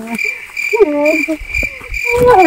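Crickets chirping in a high, evenly pulsing trill that starts and stops abruptly, with a brief voice sound about halfway through.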